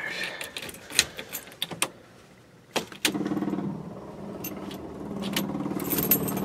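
Car keys jangling and clicking in the ignition of a Mercury pace car that has sat unused for about seven months. About three seconds in, a sharp click as the key is turned, then a steady buzz with no engine catching; the starter is not coming on.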